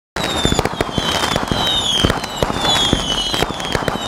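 Fireworks crackling and popping in a dense run, with repeated falling whistles, starting suddenly just after the start.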